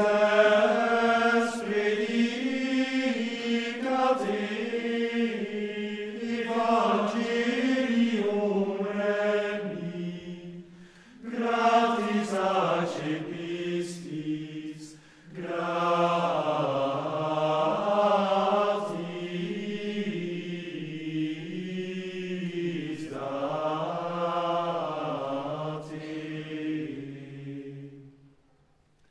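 Men's choir singing Gregorian chant in unison in Latin, the melody flowing in long phrases with short breath breaks about 11 and 15 seconds in. The last phrase dies away just before the end, leaving the reverberant hall.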